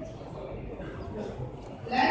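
Quiet, indistinct speech over steady room noise.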